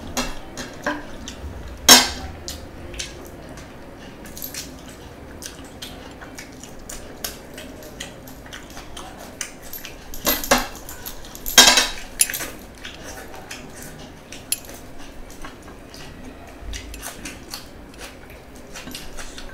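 Eating by hand from plates: the silver rings on the eater's fingers knock and clink against the plates as he scoops food, with many small clicks and a few sharp clinks, the loudest about two seconds in and twice around eleven to twelve seconds in.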